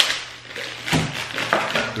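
Thin plastic food wrapper crinkling and tearing as it is pulled open by hand, with a sharp crackle at the start.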